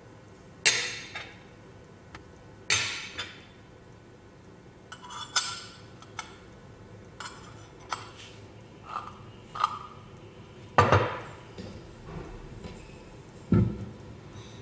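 Stainless steel blade discs and the steel cylinder of a vegetable slicer clinking against each other as a disc is fitted and the parts are handled: about six separate metallic clinks with a short ring, the loudest about 11 seconds in. Shortly before the end comes a duller thud on the wooden table.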